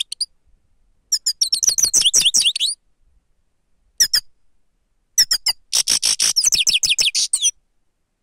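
Grey-headed goldfinch singing close up: two bursts of fast twittering song, about one and a half and two seconds long, with short high calls at the start and about four seconds in.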